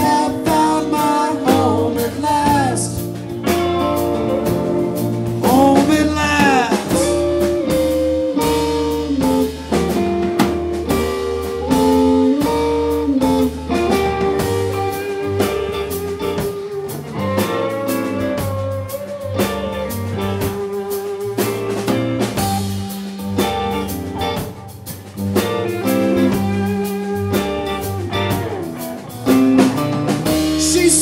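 Live blues band playing, with an electric guitar lead that bends its notes over drums, bass and keyboard.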